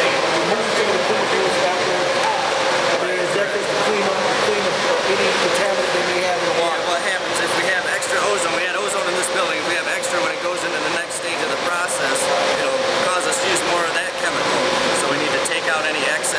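Steady drone of water treatment plant machinery with a constant hum of one pitch, under indistinct conversation.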